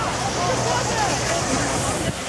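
Crowd chatter: many overlapping voices talking and calling out at once, over a steady rushing background noise.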